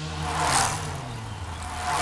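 Two whooshes of racing bicycles passing the camera at speed, the first about half a second in and the second at the very end.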